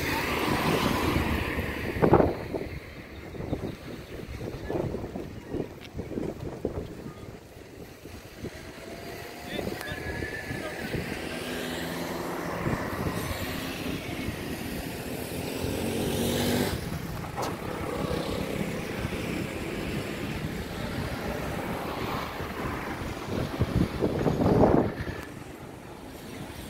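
Street ambience: vehicles passing on the road and people's voices, swelling louder a couple of times as traffic goes by.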